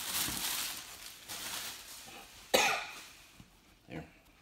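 Plastic wrap crinkling as it is handled, fading over the first second or so, then a single sudden cough about two and a half seconds in.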